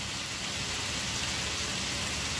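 Chicken pieces sizzling in oil in a kadai as pepper chicken fries down dry: a steady, even hiss with no stirring or scraping.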